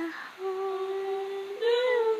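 A voice humming long, held notes without words, the pitch stepping up once near the end.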